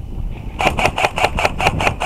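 Airsoft rifle firing a rapid string of shots, about eight a second, starting about half a second in and running past the end.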